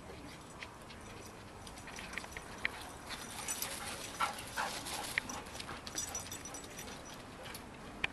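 Dogs playing: short scattered dog noises with scuffling and light clicks, busiest from about two seconds in until near the end.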